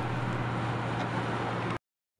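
1989 Toyota MR2's four-cylinder engine cruising steadily with a low, even hum through its new OE replacement exhaust, mixed with road noise, heard from inside the cabin. It cuts off suddenly near the end.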